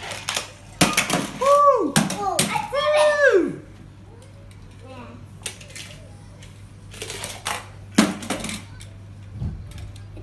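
Small toy cars clattering down a plastic toy garage ramp, with sharp plastic clacks and knocks. Between about one and three and a half seconds a child makes a run of high, rising-and-falling vocal sounds, several in quick succession.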